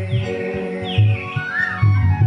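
Instrumental devotional music from a live band: regular hand-drum beats under sustained keyboard tones, with short high chirp-like notes falling in pitch over the top, about four times.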